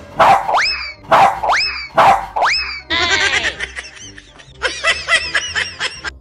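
Three loud dog-like barks about a second apart, each ending in a rising yelp. Then about three seconds of comic music and sound effects.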